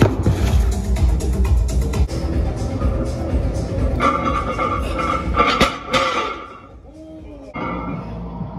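Background music with a steady beat and heavy bass, dipping away briefly near the end.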